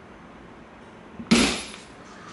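Snips cutting through a thin brass tube. One sharp snap comes about a second and a half in and fades over about half a second.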